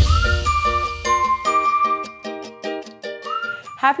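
The closing bars of a TV show's theme jingle: short, bright repeated notes, about four a second, with a rising whistle-like slide at the start and another near the end. The bass beneath fades out in the first half.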